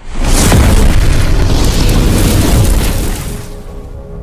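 A designed explosion sound effect: a sudden loud boom that starts at once and rumbles on for about three seconds before fading near the end, with music under it.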